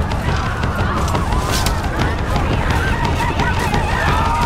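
Layered battle sound of a film village raid: a dense low rumble under scattered knocks and clatter, with short, wavering, high calls cutting through.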